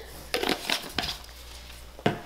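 Ground pepper being shaken from a plastic shaker bottle onto cubed raw beef: a quick run of short shakes and taps that stops a little after a second in.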